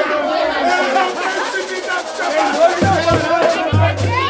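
Group of voices singing and talking loudly together over samba hand percussion, with deep booming strokes on a large hand drum starting about three seconds in.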